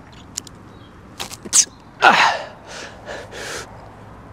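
A man breathing hard under a barbell during seated good mornings: a forceful exhale with a short falling vocal sound about two seconds in, followed by three quicker breaths. A few light clicks come before it.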